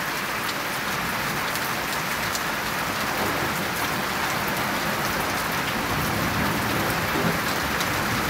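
Heavy thunderstorm rain pouring down steadily on roofs, plants and pavement.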